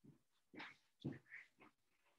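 Near silence on a video call, broken by a few faint, short sounds.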